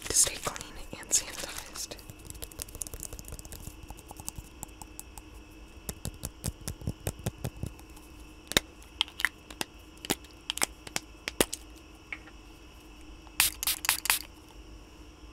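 Hand sanitizer sprayed from a small pump bottle close to a microphone, with hissy spritzes in the first two seconds and more bursts near the end. In between, fingers rubbing the wet sanitizer make many quick, sticky clicks and crackles.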